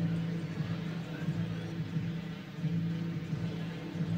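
Steady low hum and rumble of background ambience with no distinct event standing out.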